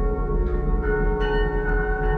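Acousmatic electronic music played back over loudspeakers: a dense layer of sustained bell-like ringing tones over a low drone. New higher ringing tones enter about a second in.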